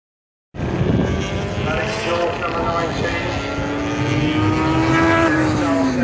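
A motorcycle engine running at steady revs, its note rising slightly and then dropping in pitch near the end as it passes, over crowd chatter.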